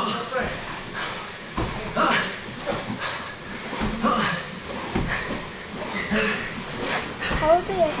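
Indistinct voices of several people talking and calling out in a mat room, with a few dull thumps.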